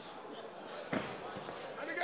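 A single thud of a boxing glove landing about a second in, over faint voices of the crowd.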